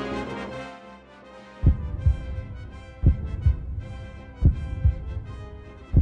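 Slow heartbeat sound effect on the soundtrack: low double thumps, each pair about half a second apart, repeating roughly every 1.4 seconds, beginning a little under two seconds in over a faint sustained hum. Brass music fades out during the first second.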